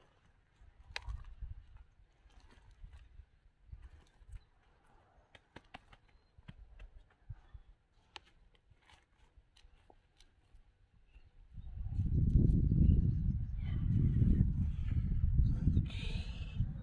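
Gloved hands pressing loose, freshly filled potting soil in plastic tubs: faint rustles and small clicks. About twelve seconds in, a loud low rumble of wind buffeting the microphone comes in, rising and falling in gusts.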